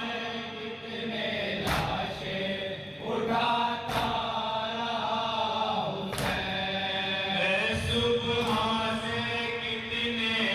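Male voices chanting a noha, a Shia mourning lament, in unison at a microphone. A sharp hand strike, matam on the chest, lands in time about every two seconds.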